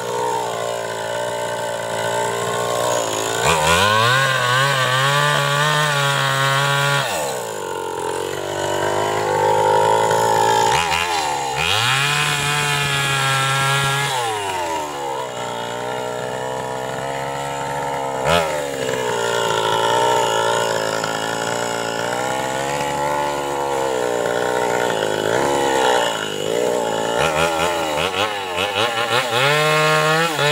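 Two-stroke chainsaw running and cutting into the trunk of a bayur tree, its engine pitch dropping and climbing back several times as the throttle is eased and the chain bites into the wood.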